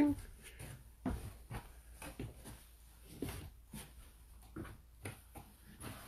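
Soft, irregular knocks and clunks of footsteps on a steep wooden stair as someone climbs down it, with handling noise close to the phone's microphone.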